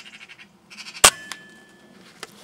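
A bird chattering in a fast, even rattle, then a single sharp air-rifle shot about halfway through, followed a quarter second later by a fainter tick.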